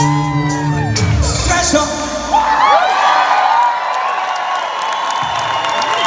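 A live rock band's last held chord dies away about a second and a half in. The concert crowd then cheers and whoops loudly.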